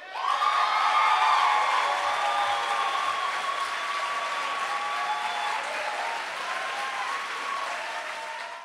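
Audience applause breaking out at the end of a spoken-word performance. It swells within the first second, then eases off a little and carries on steadily.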